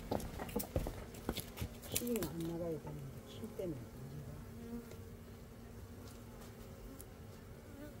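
Honey bees buzzing close to the microphone at the hive entrance, their wing hum sliding up and down in pitch as they fly past, then settling into a steadier hum. A few light knocks sound in the first two seconds.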